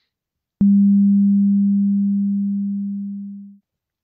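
A single low, pure electronic tone that starts with a click about half a second in, then holds its pitch and slowly fades away over about three seconds.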